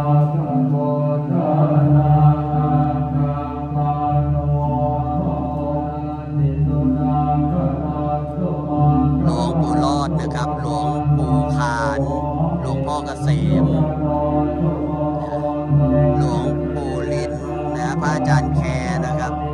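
Buddhist monks chanting Pali blessing verses together in a steady drone, the consecration chant for sacred medallions.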